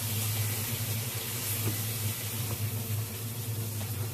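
Chili-seasoned pork slices sizzling in a non-stick frying pan, a steady hiss with a low steady hum underneath; the seasoned meat is starting to scorch.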